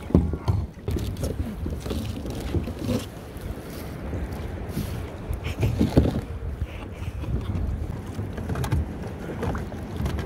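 Wind rumbling on the microphone, with scattered knocks and clunks of gear being handled on rafted-up plastic kayaks while a motor is fitted. The knocks are loudest near the start and about six seconds in.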